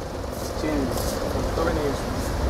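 Faint background voices over a steady low rumble, with a light rustle of silk fabric as a dupatta is lifted and shaken out.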